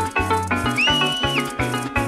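Live joropo (música llanera) played instrumentally: a llanera harp plucking a fast melody over pulsing bass notes, with a cuatro and steadily shaken maracas. Near the middle, a high tone glides up, holds for about half a second and drops away over the music.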